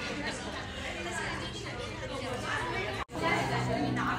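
Indistinct chatter of several people talking at once. It breaks off sharply about three seconds in and comes back louder.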